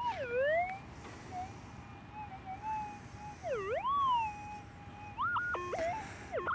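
Pulse-induction gold metal detector's steady threshold tone, swooping down and back up in pitch twice as the coil passes over a buried target, then breaking into choppy stepped tones near the end. The target is a five-cent coin buried about 8 to 10 inches deep.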